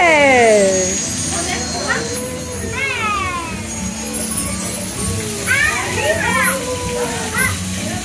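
Young children squealing with excitement, three high cries that slide down in pitch, over a background of crowd chatter.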